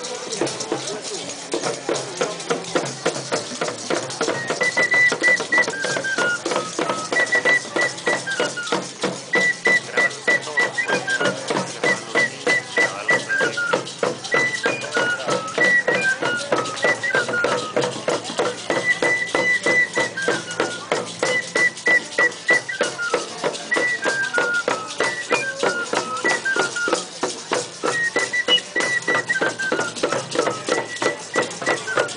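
Procession music from a small double-headed hand drum and maracas keeping a fast, even beat. From a few seconds in, a high pipe plays a short tune that steps downward, repeated over and over.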